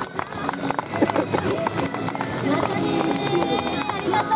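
Several young women's voices calling out over scattered clapping.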